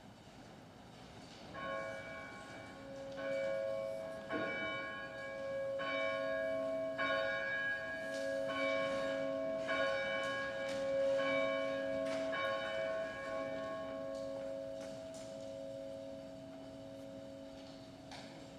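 A church bell tolling: about nine strokes, roughly one every second and a half, each hum and overtone ringing on into the next, then the last stroke dies away.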